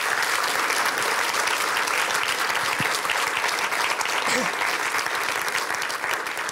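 Large audience applauding, a steady dense clapping.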